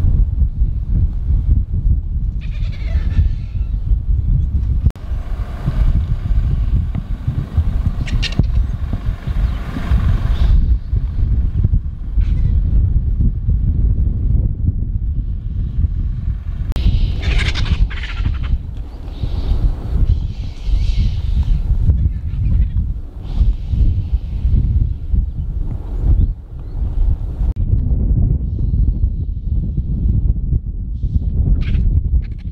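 A flock of vultures squabbling over a carcass, giving harsh calls off and on, with a burst of calling near the middle. A loud, steady low rumble runs underneath.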